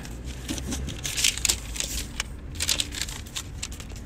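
Paper rustling and crinkling in short bursts as a paper store receipt and game tickets are handled, over a low steady rumble.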